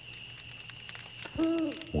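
A single owl hoot, one steady low call about half a second long, coming after a second and a half of quiet.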